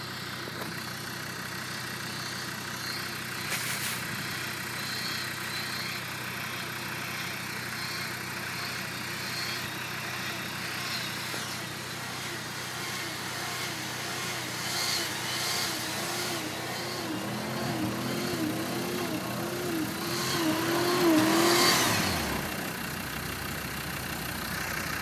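Jeep Grand Cherokee's engine pulling hard up through deep snow, its revs wavering up and down and growing louder as it approaches, loudest near the end before easing off. A steady engine idle sits underneath.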